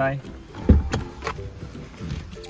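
A car's rear passenger door being unlatched and pushed open from inside: a single heavy clunk about two-thirds of a second in, then a few lighter clicks.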